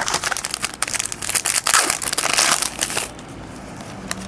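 Foil wrapper of a trading-card pack crinkling and crackling as it is handled and torn open, a dense run of small crackles that grows loudest in its second half and then stops.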